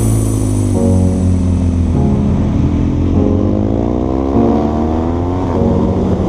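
Motorcycle engine heard from an onboard camera, its revs climbing and dropping back several times as the rider works the throttle and gears.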